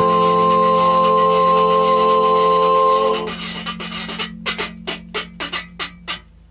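Zydeco music: an accordion holds a sustained chord for about three seconds and then drops out. A rubboard (frottoir) is left scraping a quick, even rhythm, quieter, over a low held note.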